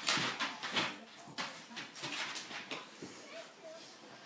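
A bloodhound and a bulldog-rottweiler cross play-fighting on a wooden floor: irregular scuffling with short dog yips and whimpers, loudest in the first second and then quieter.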